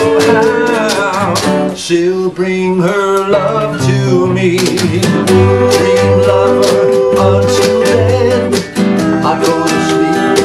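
Acoustic guitar and ukulele playing a song together, strummed in a steady rhythm under a held melody line.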